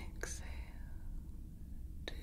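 Steady low rumble of a starship engine-hum ambience, the Enterprise-D's background drone. A soft mouth click with a breathy whisper comes about a quarter-second in.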